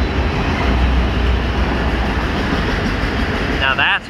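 Loaded autorack freight cars rolling past close by: a steady rumble of steel wheels on rail, heavy in the low end.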